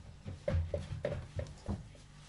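Hands pressing and gathering a shaggy yeast pizza dough on a countertop: about five soft, dull thumps in a second and a half.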